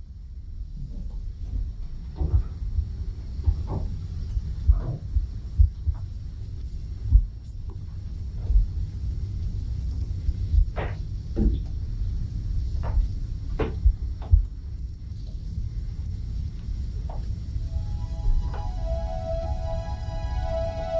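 Footsteps thudding down a spiral staircase and across a floor, with scattered knocks over a steady low hum. Music with held notes comes in near the end.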